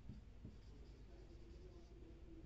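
Faint sound of a marker writing on a whiteboard, barely above room tone.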